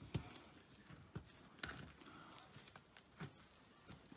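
A few faint, irregular clicks and taps of fingers working at a laptop's keyboard and plastic case as the keyboard is being lifted out.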